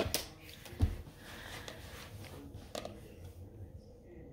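Small colored counting cubes being handled on a table: a few light knocks and clicks as they are picked up and set down, the sharpest knock about a second in.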